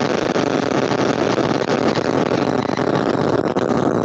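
Loud, steady rushing noise coming through a video-call participant's open microphone, starting and cutting off abruptly.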